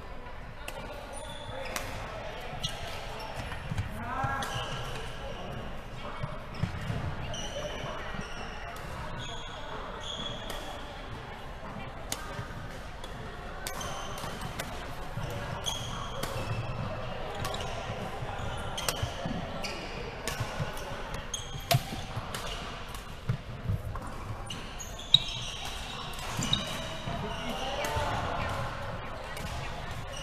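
Badminton rackets striking shuttlecocks in a rally, as sharp irregular cracks every second or so, the loudest about three seconds before the end, with short high squeaks of court shoes on a wooden sports floor. Players' voices carry through the hall.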